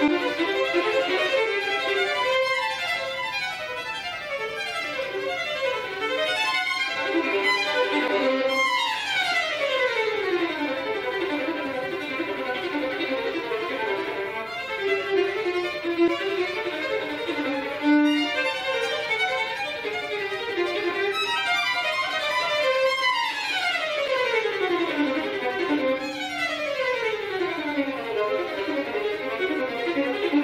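Solo violin playing fast virtuoso passagework, with two long rapid scale runs falling from high to low, one about nine seconds in and another about twenty-three seconds in.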